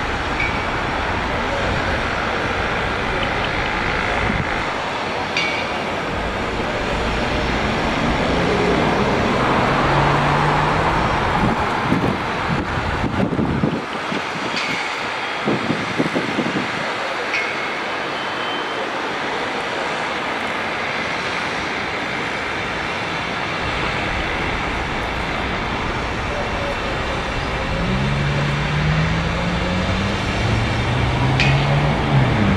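Steady outdoor traffic noise from a city street, with faint voices now and then.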